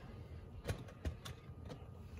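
A few faint, sharp clicks as a mesh bag of plastic LEGO bricks is handled in a sink of soapy water, the bricks knocking together.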